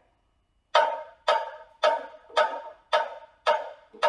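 Metronome clicking a steady beat, just under two clicks a second: six evenly spaced clicks, the first coming about three-quarters of a second in.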